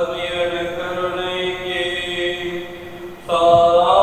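Slow liturgical chant with long held notes, quieting toward three seconds before a new, louder note enters a little after.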